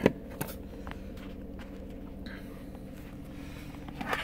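Steady low hum inside a car cabin, with a few faint clicks and taps of handling.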